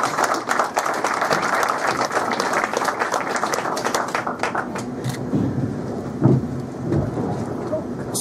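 Audience applauding: dense clapping that thins out about halfway through.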